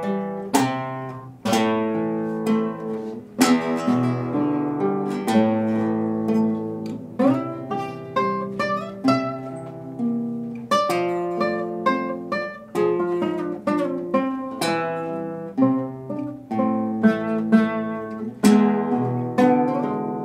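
Two acoustic guitars playing together in an instrumental passage: a run of plucked notes and strummed chords, each with a sharp attack that rings and fades.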